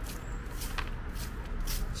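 Broom sweeping fallen leaves across asphalt pavement: a run of short swishing strokes, a few a second.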